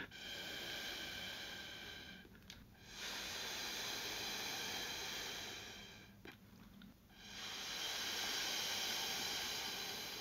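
Air blown through a plastic drinking straw onto wet acrylic pouring paint, pushing the paint out into petals: three long, steady blows of two to three seconds each, with short breaks between them.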